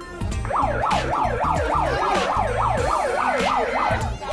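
Siren of a Pyle handheld megaphone, a fast up-and-down electronic wail repeating three to four times a second, starting about half a second in. Background music with a beat plays underneath.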